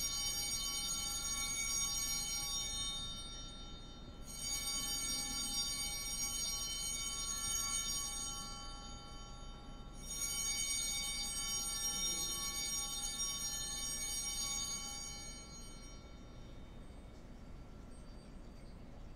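Altar bell rung three times during the elevation of the consecrated host. The strokes come at the start, about four seconds in and about ten seconds in, and each one rings on and fades away.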